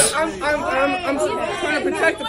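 Speech only: several people talking, their voices overlapping.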